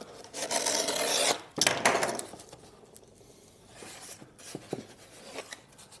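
Corrugated cardboard pieces rubbing and scraping against each other and the tabletop as they are handled. There are two scrapes in the first two seconds, then it goes quieter with a few light taps.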